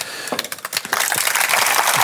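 Audience applause starting as scattered claps and swelling into dense, steady clapping about a second in.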